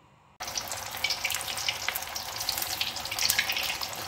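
Cauliflower florets deep-frying in hot oil in a wok: a steady sizzle with many small crackles and pops. It starts suddenly about half a second in, after a brief moment of near silence.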